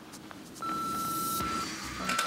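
Electronic countdown beep from a bomb in a film: one steady high tone lasting about a second, starting a little over half a second in. It is one of a series of beeps that is getting faster.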